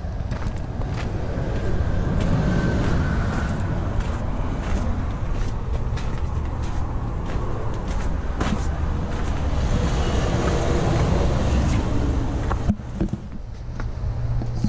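Footsteps on gravel under a steady low rumble.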